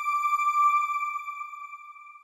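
A single held electronic chime note, the sound logo of a TV channel ident, fading steadily away.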